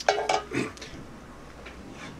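A wooden spatula knocking and scraping against a metal frying pan on the stove, a short clatter in the first half-second.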